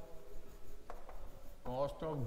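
Chalk writing on a blackboard: scratching and rubbing strokes, with a sharp tap about a second in.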